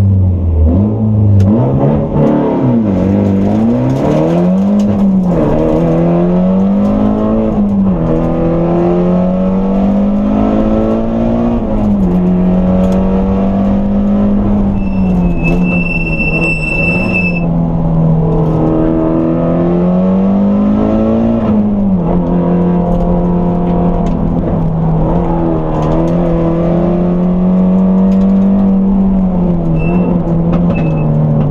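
Race car's engine heard from inside the cabin, driven hard on a sprint course: the engine note climbs through the revs and drops back again and again as the driver shifts and lifts for corners, with stretches at steady revs. A high steady beep sounds for about two seconds around the middle, and two short beeps come near the end.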